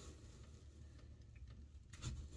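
Near silence: room tone with a faint low hum and a few faint small clicks.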